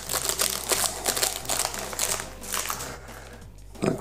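Thin clear plastic sleeve crinkling as a fountain pen is handled and pulled out of it: a quick run of crackles that dies away about three seconds in.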